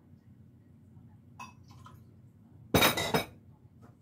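A drinking glass clinking against glass at a kitchen sink: a couple of faint taps, then one sharp clink about three seconds in that rings briefly.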